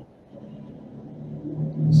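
A person's voice held on a low, steady closed-mouth hum, growing louder toward the end and running into speech.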